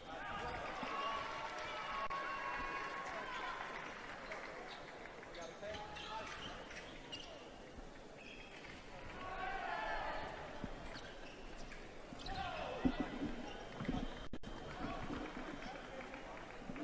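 Indistinct voices echoing in a large arena, with fencers' footwork thudding on the piste: a few louder thumps come about three-quarters of the way through.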